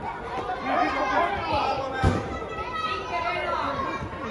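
Children's and adults' voices chattering and calling across a large indoor sports hall, with one sharp thump of a football being kicked about two seconds in.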